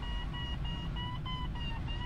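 A glider's electronic variometer beeping in quick short pulses, the sign that the PW-5 is climbing in lift, over a steady low rush of air past the cockpit.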